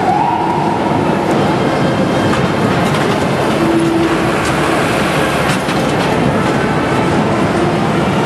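Motor vehicles driving past close by on a city street: a steady, loud rumble of engines and tyres. A siren's wail, rising in pitch, fades out in the first second.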